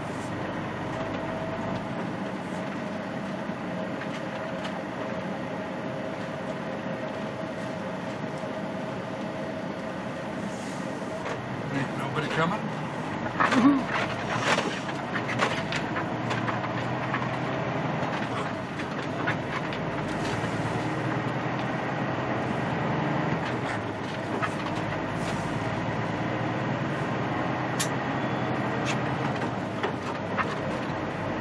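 Semi-truck's engine and road noise heard from inside the cab as the rig drives along, running steadily, with a burst of clicks and knocks about halfway through.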